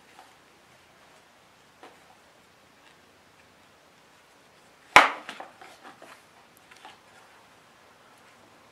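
Faint handling clicks, then one sharp knock about five seconds in followed by a brief clatter of smaller knocks as a Kydex sheath with its knife and a small wooden block are set down on a Kydex press.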